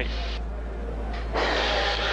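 Team radio hiss over a steady low hum, then a voice on the radio link breaks in about two-thirds of the way through.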